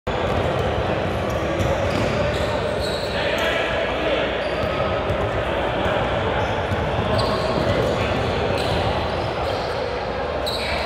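Basketballs bouncing on a hardwood gym floor, irregular thuds from several balls at once, over the chatter of players' voices, all echoing in a large gym.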